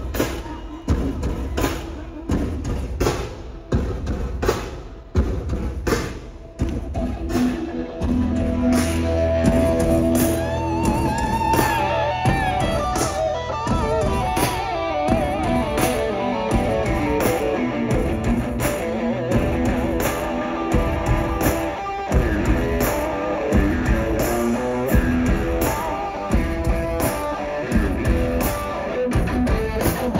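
Live rock band playing through a concert PA: a broken, drum-led opening, then about eight seconds in the full band comes in with a wavering electric guitar lead over bass and drums.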